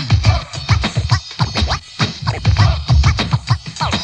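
Turntable scratching over a hip-hop drum beat: a record is worked back and forth under the needle in quick strokes that sweep up and down in pitch.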